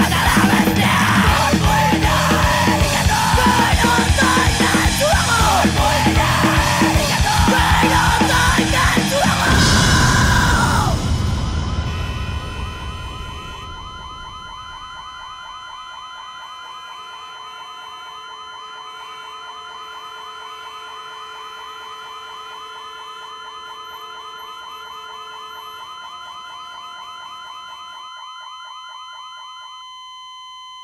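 Hardcore punk band playing loud, distorted music, which stops about ten seconds in and rings out. A quieter, steady, warbling siren-like tone then holds, thinning to a single plain tone near the end.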